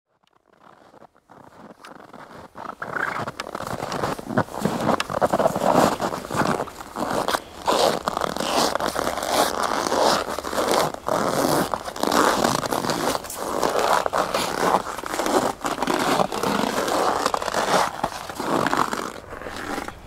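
Footsteps in winter boots crunching through snow at a walking pace, about one step a second, fading in over the first few seconds.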